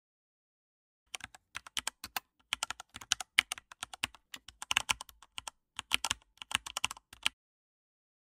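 Typing on a computer keyboard: a quick, irregular run of key clicks that starts about a second in and stops shortly before the end.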